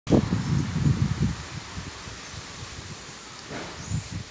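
Irregular low rumbling on the microphone for about the first second and a half, then a steady faint outdoor hiss.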